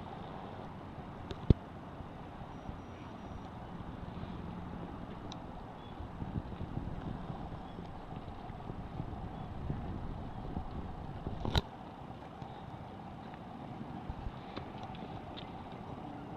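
Outdoor street ambience of steady traffic noise that swells a little in the middle. A sharp click comes about a second and a half in, and a louder knock comes about two-thirds of the way through.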